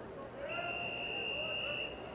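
A long, steady whistle blast of just over a second, starting about half a second in and cutting off sharply: the referee's long whistle calling swimmers up onto the starting blocks.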